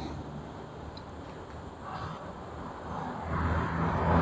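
A distant engine's low, steady hum under outdoor background noise, growing louder over the last second or so.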